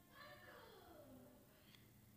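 Near silence, with a faint pitched call in the background that falls in pitch over about the first second.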